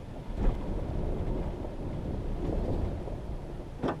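Low, noisy rumble of a pickup truck rolling over a rough dirt trail, starting about half a second in, with a sharp knock just before the end.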